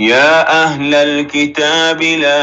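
A male voice chanting a Quranic verse in melodic recitation, with long drawn-out notes that glide in pitch. It comes in suddenly at full loudness.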